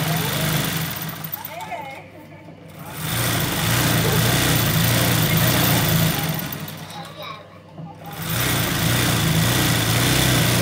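Electric sewing machine stitching free-hand embroidery on fabric held in a hoop. It runs steadily, stops for about a second around two seconds in, runs again, and stops once more near seven and a half seconds before starting up again.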